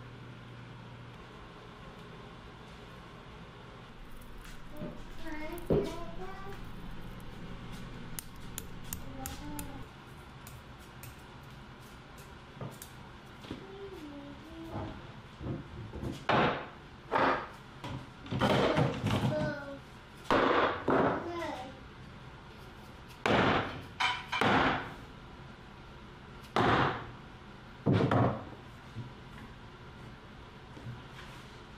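Shop sounds of clamping a hickory panel glue-up: boards and bar clamps handled with scattered clicks and knocks, then from about halfway a run of about eight loud knocks as a rubber mallet taps the boards flush in the clamps.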